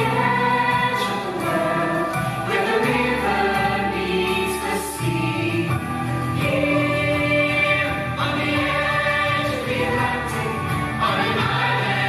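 Musical-theatre ensemble of young performers singing together in chorus over instrumental accompaniment, steady and loud throughout.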